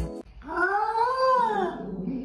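A cat's single long meow, rising and then falling in pitch, just after a burst of music cuts off.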